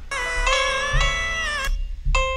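A male pop singer holding a high sung note, about C sharp 5, live with backing music, for about a second and a half with a slight waver before it breaks off near the end.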